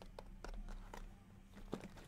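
Faint taps and rustling of shrink-wrapped cardboard trading-card boxes being handled in a stack: a few small knocks over a low steady hum.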